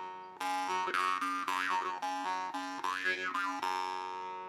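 A La Rosa marranzano (Sicilian jaw harp) being played: a steady twanging drone on one pitch, plucked about three times a second, with overtones that the mouth sweeps up and down into a melody. It starts again after a short break about half a second in.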